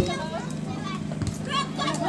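Distant shouts and calls of players on an outdoor football pitch over a steady low hum, with one dull thump about a second in that fits a ball being kicked.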